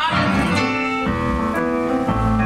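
A live band playing an instrumental bar between sung lines, with keyboard chords to the fore over electric guitar and drums; the chords change about every half second.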